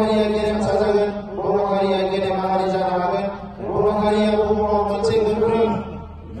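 A man's voice amplified through a microphone and loudspeakers, chanting in three long, drawn-out phrases on held pitches with short breaks between them.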